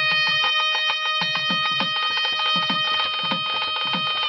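Instrumental background music in Indian classical style: a wind instrument holds one long steady note while low drum strokes sound underneath.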